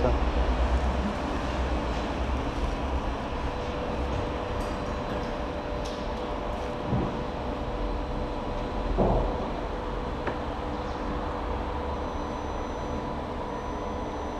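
Steady low machine hum and rumble with faint constant tones, the background noise of a car workshop. A brief soft voice is heard about nine seconds in.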